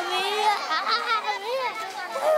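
A group of young children's voices: excited, high-pitched shouting and chatter overlapping one another.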